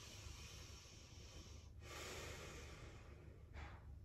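A woman breathing slowly and audibly in a seated forward fold: two long, faint breaths of about two seconds each, then a short breath near the end.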